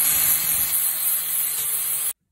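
Angle grinder with a flap disc grinding the steel collar of a spark plug body held in a vise: a steady, loud, hissing grind with the motor's hum underneath.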